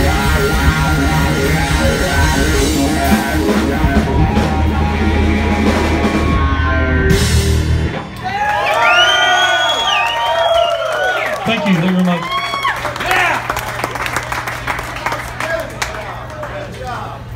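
A live rock band of electric guitars, bass and drum kit plays the last bars of a song and stops sharply about halfway through. Then come several whoops and cheers over a steady amplifier hum.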